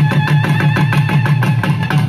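Tamil melam ensemble: nadaswaram double-reed horns play a quick, evenly repeated note figure over rapid thavil drum strokes.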